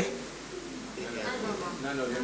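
Faint voices of audience members murmuring a reply, carried in the hall.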